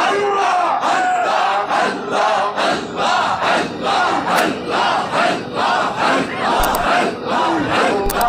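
Group of men chanting Sufi zikir loudly in a driving rhythm, the shouted phrases pulsing about twice a second.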